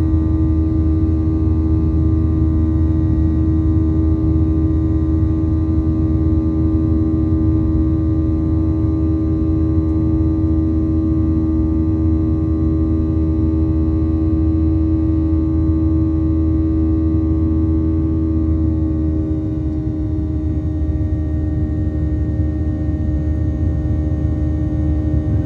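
Airliner cabin noise during the climb after takeoff: a steady jet-engine drone with a low rumble and a set of steady humming tones, dipping slightly about twenty seconds in.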